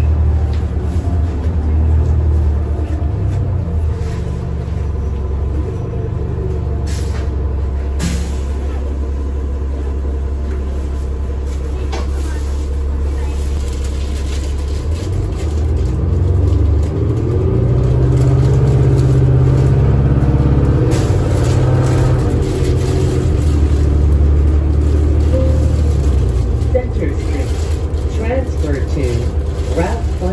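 Interior sound of a 2013 New Flyer Xcelsior XD40 transit bus with its Cummins ISL9 inline-six diesel and Allison automatic transmission: a steady low engine hum at first, with two sharp clicks about seven and eight seconds in. About sixteen seconds in, the engine note grows louder and climbs in pitch as the bus pulls away and accelerates.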